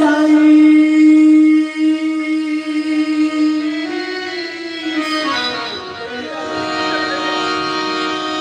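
A live song: a male singer holds one long note for about four seconds, then moves on through the melody, with harmonium accompaniment.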